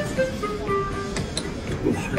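Background music: a light melody of short held notes stepping from one pitch to the next.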